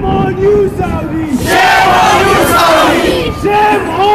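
A crowd of protesters shouting slogans together, loud, with the shouting swelling about a second and a half in.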